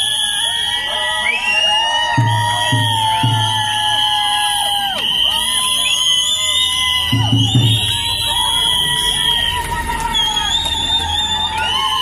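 A group of voices singing in long held, sliding notes over crowd noise, with a few low thumps about two to three seconds in and again about seven seconds in.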